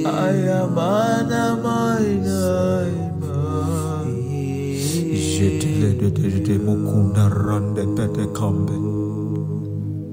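Soaking worship music: steady, sustained backing chords with a voice chanting in long, gliding melodic phrases over them.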